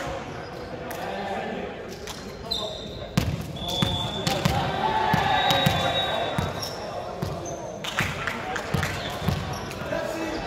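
A volleyball thudding on a hardwood sports-hall floor, a series of short low thuds, with brief sneaker squeaks and players' voices echoing in the large hall.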